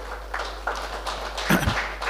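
Faint room noise over a steady low hum picked up through the podium microphone, with a short tap about one and a half seconds in.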